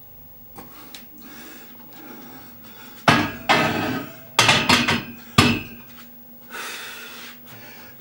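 Iron-plate-loaded barbell set back onto the squat rack's hooks after a set of squats: a loud metal clank about three seconds in, then several more metal clanks over the next two seconds.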